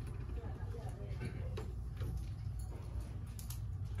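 Faint chatter of several people in a room over a steady low rumble, with a few light clicks.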